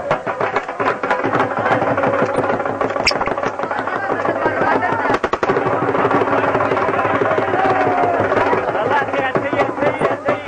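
Festive music with steady rhythmic drumming, mixed with many voices, and one sharp crack about three seconds in.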